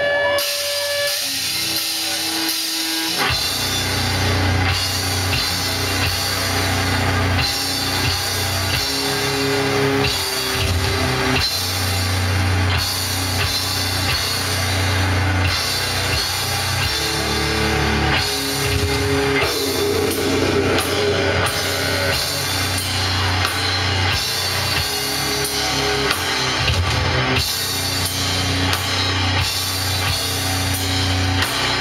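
Metal band playing live: distorted electric guitars and drums. The heavy low end and full band come in about three seconds in, after a thinner guitar opening.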